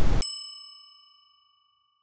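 A hiss cuts off just after the start and a single bell-like ding sound effect rings out. Its high overtones fade quickly while its lowest tone lingers faintly for about two seconds.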